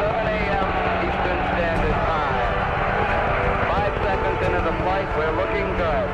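Saturn V first stage's five F-1 rocket engines firing at liftoff, a dense low rumble, with indistinct voices over it.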